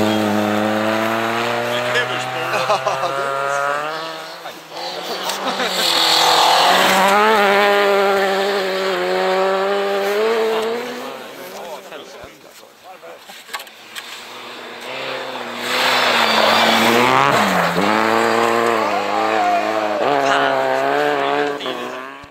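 Rally cars on a snowy special stage driving past one after another, engines revving up and down through the gears. The first pulls away at the start, a second passes between about six and eleven seconds in, and a third between about fifteen and twenty-one seconds in.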